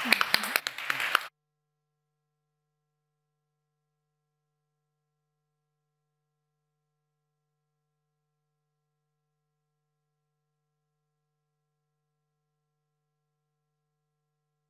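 Applause with a short laugh, cut off abruptly about a second in, followed by near-total silence with only a faint steady low hum.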